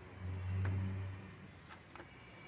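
Low rumble of a passing vehicle that swells and dies away within about a second, with a few light metallic clicks.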